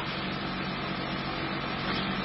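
Steady, even background hiss of a remote interview line, with no speech.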